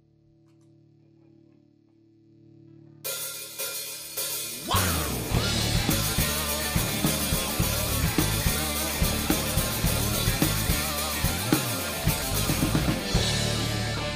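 Live rock band with drum kit and electric guitars starting a song: faint held tones for about three seconds, then the band comes in suddenly, with steady drum and cymbal hits from about five seconds in.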